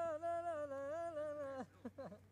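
A man humming one long held note that wavers slightly in pitch and breaks off about one and a half seconds in.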